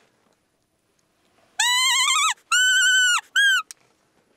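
Roe deer call blown three times, imitating a doe's high piping fiep to lure a roebuck: a first call that wavers and rises, a longer level one, then a short one, followed by a small click.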